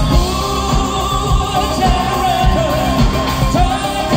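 Live synth-pop band: a male lead vocalist singing a held, wavering melody into a microphone over guitars, keyboards and a steady drum beat, amplified through a stage PA.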